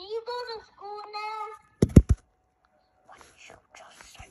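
A child's voice making drawn-out wordless vocal sounds, then three sharp knocks close together about two seconds in, louder than the voice, followed by faint low noises.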